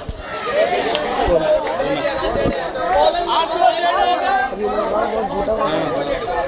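Several men's voices talking and calling out over one another. Right at the start there is one sharp knock from a cricket bat striking the ball.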